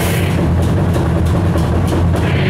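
Heavy metal band playing live: thick distorted guitars and bass over drums. About half a second in, the bright top end thins out, leaving mostly the low guitar and bass.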